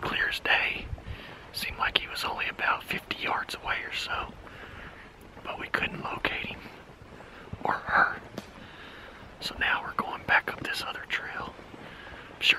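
A man whispering in short phrases with pauses between them.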